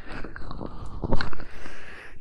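Latex-gloved hands rubbing and crinkling close against the microphone: a dense run of crackly clicks with a louder burst just past a second in.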